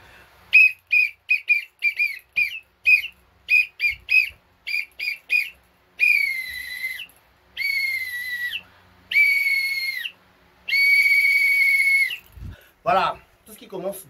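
Small plastic whistle blown hard like a referee's whistle: more than a dozen quick short blasts, then four long blasts, each dropping slightly in pitch as it ends. It signals the end of the match.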